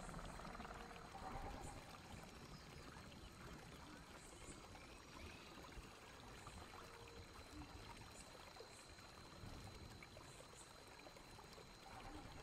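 Near silence: a faint, steady ambience of flowing, trickling water.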